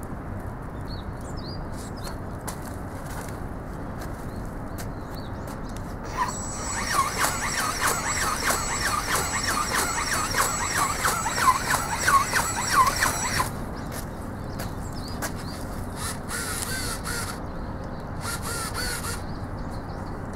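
Hand-held robotic dragon ornithopter's electric motor and wing-flapping gear drive running for about seven seconds, with a steady high whine, a regular beat of a few strokes a second and squeaky sweeps on each wingbeat, then cutting off. Two shorter runs follow near the end.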